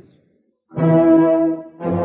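Orchestral brass music bridge from a radio drama: after a short silence, a held brass chord comes in about two-thirds of a second in, and a second held chord starts just before the end.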